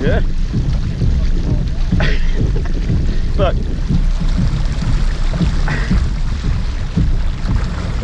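Wind buffeting the camera microphone in a steady low rumble, with water washing along a pedal kayak's hull as it moves.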